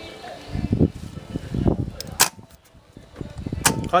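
Two sharp clicks about a second and a half apart as leads are touched to the terminals of a Mercedes starter motor being bench-tested, with handling rustle before them. The starter motor does not spin up.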